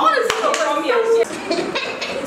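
Women's voices talking over one another, with a few sharp hand claps among them.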